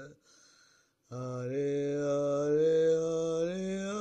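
Slow chant-like music: after a brief pause, a low wordless sung note begins about a second in and is held for about three seconds, its pitch slowly rising.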